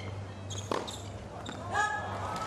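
Tennis rally on a hard court: a few sharp knocks of the ball off racket strings and court, the loudest about three-quarters of a second in. A short voice-like sound starts near the end.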